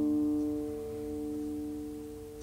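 Steel-string acoustic guitar chord left ringing after a strum, its notes sustaining and slowly fading away.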